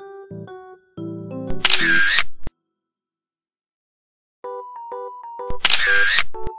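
Background music of short, simple notes, broken twice by a loud camera-shutter sound effect, about a second and a half in and again near the end. The music stops dead after the first shutter and comes back about four and a half seconds in.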